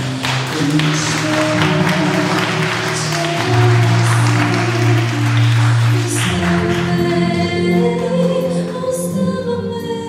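A woman singing a slow song live into a handheld microphone, over accompaniment that holds long, low sustained notes.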